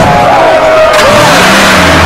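Cartoon sound effect of a van engine revving as the van pulls away, with a long, wavering high squeal held over it.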